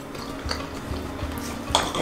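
Knife and fork clinking and scraping on ceramic plates as pancakes are cut, with one sharper clink near the end.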